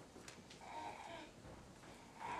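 Quiet room tone with a faint, drawn-out murmur of a voice, like a held "mmm", about half a second to a second in, and a few light clicks before it.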